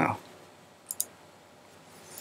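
Two quick mouse-button clicks close together about a second in, as the computer's Save button is clicked.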